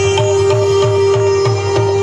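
Qawwali ensemble playing an instrumental passage: a harmonium holding a steady note under a melody, over a quick hand-drum beat of about four strokes a second.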